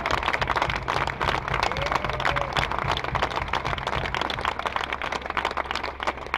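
Outdoor crowd applauding, a dense patter of many hands clapping with a few voices mixed in. For about the first four seconds a low rumble runs underneath as the microphone is handled and passed from one speaker to the other.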